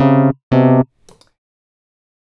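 Two short synthesized keyboard notes at the same low pitch, each about a third of a second long, in quick succession. This is the piano roll's preview of MIDI bass notes as they are dragged down, played by the Analog and Electric instruments that Convert Melody to MIDI loads. A faint blip follows, then silence.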